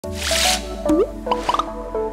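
Channel intro jingle: a brief whoosh at the start, then a rising bloop and a quick run of short rising pops laid over a light musical tune.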